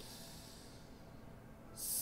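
A man breathing in close to the microphone: a faint breath, then a louder, sharper hissing inhale near the end, just before he speaks again.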